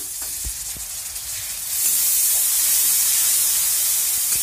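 A splash of water poured into hot frying masala in a metal kadhai, sizzling and hissing as it boils off, louder from about two seconds in. The water is added so the masala does not burn.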